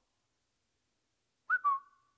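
A short whistle about a second and a half in: a click, then a brief, thin whistled note that steps slightly down in pitch.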